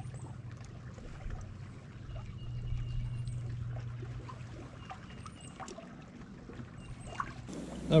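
Water lapping and trickling against a small fishing boat's hull over a steady low hum, with scattered light ticks.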